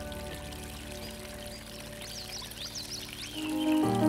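Soft background music laid over a steady running-water sound, with high chirps about halfway through. A louder new chord comes in near the end.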